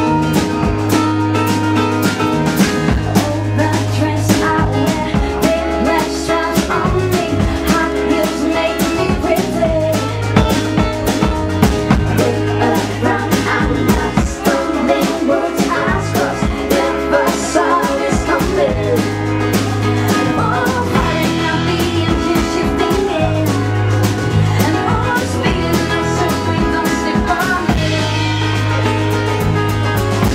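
Live band music: a woman singing into a handheld microphone over bass guitar and drum kit, with a steady beat throughout.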